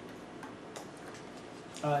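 Quiet room tone with a few faint, sharp clicks scattered through it, then a man's voice begins near the end.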